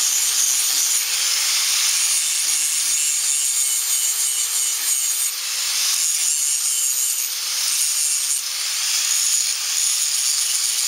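Angle grinder grinding down steel flanges on a trailer ball coupler: a steady, loud hissing grind over a motor whine that wavers slightly up and down in pitch.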